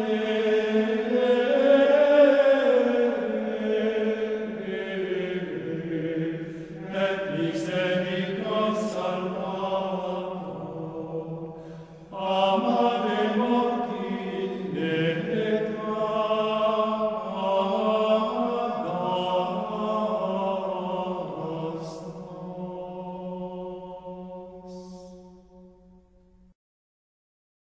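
Sung religious chant: voices holding long, slow phrases, with a short break about twelve seconds in, then fading out near the end.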